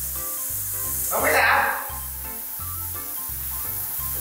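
Overhead rain shower head running: a steady hiss of falling water that swells louder for a moment about a second in. Background music with a steady bass beat plays under it.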